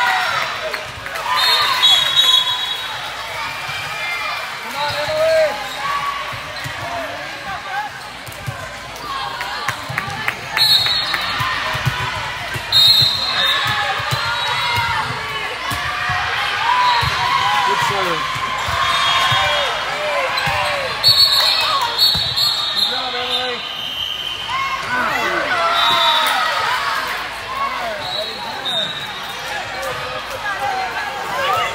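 Indoor volleyball play: the ball being struck and bouncing, short high sneaker squeaks on the court, and many overlapping voices of players and spectators talking and calling out.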